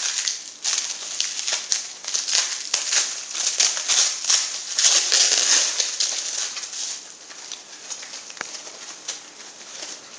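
Plastic packaging crinkling and rustling as it is pulled off a charger by hand, busiest for the first several seconds, then softer.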